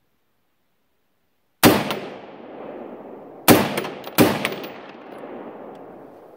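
Three rifle shots from an AR-style rifle fitted with an Atlas muzzle brake, each trailing off in a long rolling echo. The first comes about a second and a half in, and the last two follow less than a second apart.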